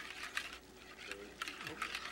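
Wire whisk clicking irregularly against a bowl as eggs and milk are whipped.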